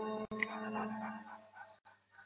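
Film score holding sustained notes and fading away, with a short high dog whimper about half a second in.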